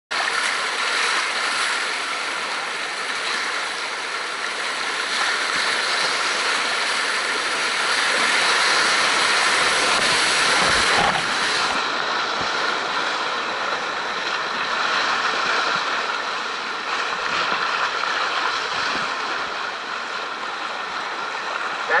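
Whitewater rapid rushing steadily, heard up close from an action camera riding at water level through the rapid. The sound turns a little duller about halfway through.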